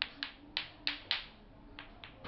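Bati-bati clacker toy: two balls on strings knocking together as a small child swings it, about six sharp clacks at an uneven pace with a pause before the last one.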